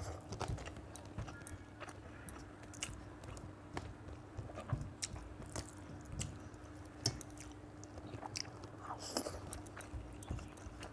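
Close, wet chewing and mouth sounds of a person eating rice and chicken curry by hand. Small irregular smacks and clicks come every second or so.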